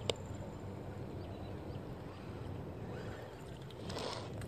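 Abu Garcia Revo baitcasting reel being cranked steadily to retrieve a lure, a faint low whir of the reel and rod handling, with one sharp click just after the start.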